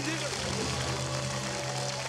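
Studio audience applauding and cheering over a sustained game-show music sting.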